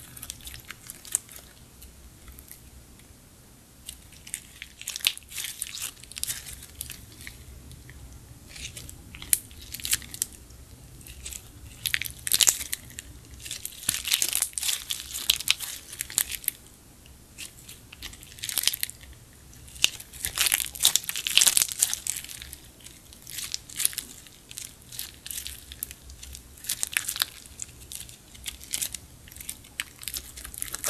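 Clear slime packed with small plastic flower charms being squeezed, folded and stretched by hand: a run of sticky crackles and crunchy pops. It is quiet for the first few seconds, then gets busiest in the middle.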